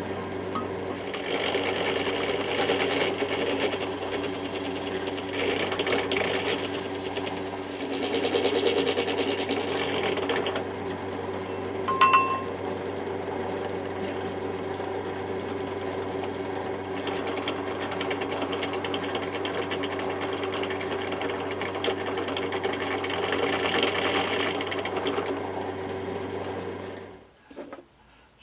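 Benchtop drill press running steadily while a brad point bit drills a hole through a wooden block; the cutting noise rises in several stretches as the bit is fed into the wood. The motor switches off about a second before the end.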